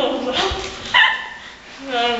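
Muffled voices and laughter from mouths stuffed with marshmallows: short pitched vocal sounds, the strongest about a second in.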